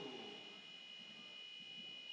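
Faint sports-hall ambience during a break in play, with a thin, steady high-pitched tone over it.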